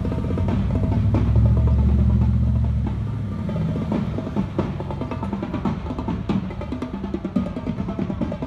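Drums playing: rapid snare rolls over bass drum, going on throughout. A low rumble swells between about one and three seconds in as a pickup truck drives past.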